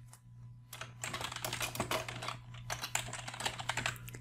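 Computer keyboard typing: a quick, unbroken run of keystrokes starting just under a second in and running for about three seconds.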